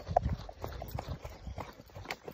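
Running footsteps on a dirt trail: a quick, even rhythm of footfalls, many to the second.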